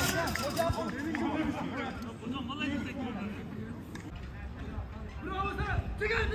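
Indistinct men's voices calling and chattering across a small-sided football pitch, stronger near the start and again near the end.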